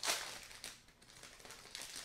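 A snack bag being handled, crinkling in short bursts, the loudest right at the start.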